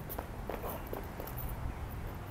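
Footsteps on concrete: a few irregular taps and scuffs over a steady low rumble.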